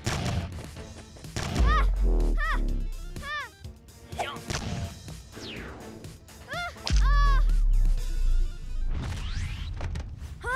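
Cartoon battle sound effects over music: two deep cannon booms, one about a second and a half in and one about seven seconds in, with whooshes and short high cries between them.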